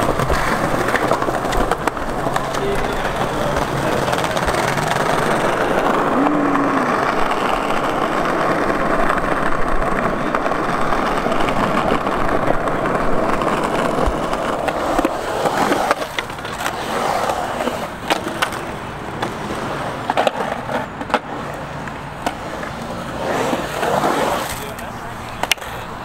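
Skateboard wheels rolling over rough ground, a steady grinding noise for about the first fifteen seconds. After that the rolling is quieter and more uneven, with a few sharp clacks.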